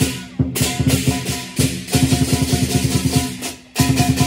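Chinese lion dance percussion: a big drum beaten in fast strokes under clashing cymbals, with brief breaks in the beat about half a second in and again near the end.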